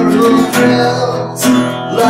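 Steel-string acoustic guitar strumming chords, with a few strokes ringing into one another.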